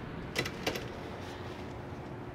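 Two short knocks about a third of a second apart as things are handled inside a metal dumpster, over a faint steady hum.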